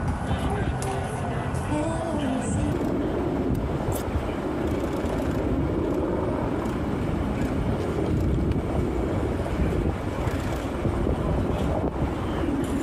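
Outdoor sound of an emergency scene picked up by a phone: a steady low rumble with indistinct voices and scattered small knocks.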